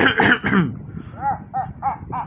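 A person coughing: a few short, rough coughs at the start, followed about a second in by a quick string of short pitched sounds, each rising and falling.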